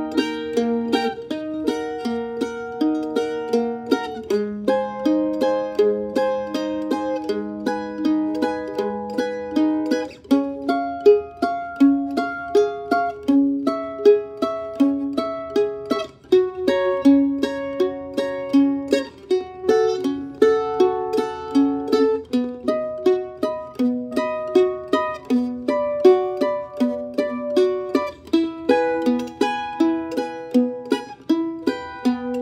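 Apitius Vanguard F5 mandolin played guitar-style in a boom-chuck pattern: a single bass note on the low strings alternates with a picked chord, about two strokes a second. It moves to a new chord every six seconds or so.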